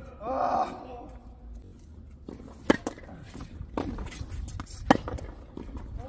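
Sharp knocks of a tennis ball on a hard court: two loud ones about two seconds apart, with a fainter one between. A voice is heard briefly at the start.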